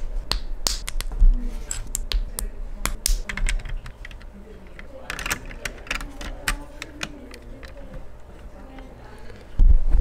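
Plastic LEGO bricks clicking as they are pressed onto a small model car and handled: a quick run of sharp clicks over the first few seconds, then a few more around the middle. A low rumble of handling comes in just before the end.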